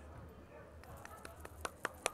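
Low steady hum in a gymnasium, with four sharp, faint taps in the second half, spaced a fraction of a second apart.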